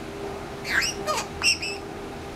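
Blue-headed pionus parrot giving a quick run of short calls: a falling squawk, then sharp chirps, the loudest about one and a half seconds in.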